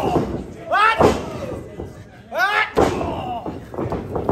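Wrestlers shouting in a match: two loud, falling yells, about one and two and a half seconds in, among heavy thuds and slams in the ring.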